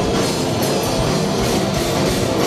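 A live punk rock band playing loud and steady: distorted electric guitars, bass and a pounding drum kit with cymbal hits, recorded from the crowd in a theatre.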